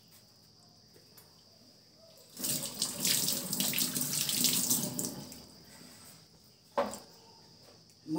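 Water running from a tap for about three seconds, starting a couple of seconds in and tapering off, followed by a single sharp knock.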